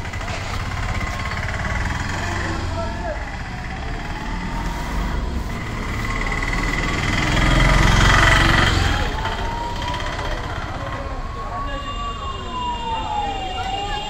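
An emergency-vehicle siren wailing, its pitch slowly rising and falling, over a steady low traffic rumble, with a louder rush of noise about halfway through.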